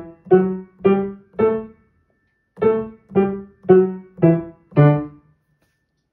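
Piano playing a D major five-note scale (D, E, F sharp, G, A) with both hands together, staccato. The last three short, detached notes climb, there is a pause of about a second, and then five notes come back down, each cut short.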